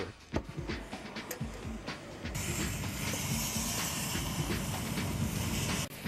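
Metal clanking and knocking as tools work among scrap metal, then a loud, steady hiss with rattling underneath from about two seconds in, cut off just before the end.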